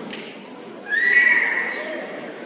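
A single high-pitched squeal from someone in the audience, starting about a second in and fading over about a second.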